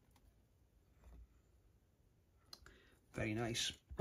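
Faint light clicks and soft rustles from handling a vinyl LP record in a quiet room, then a man's voice starts near the end.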